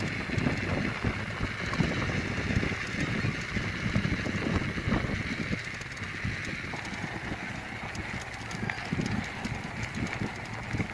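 Bicycle ridden over a rough, bumpy track, its tyres and frame giving a continuous irregular rattle and knocking, with wind rumbling on the action camera's microphone.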